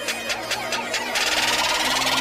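Electronic intro sound effects: rapid, evenly spaced ticks over a low steady drone, giving way about a second in to a loud hissing whoosh.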